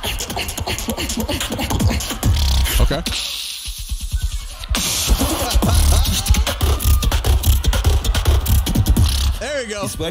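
Live beatboxing through a microphone and PA: deep buzzing lip-bass with sharp percussive hits. The bass drops out for about two seconds midway, then comes back in.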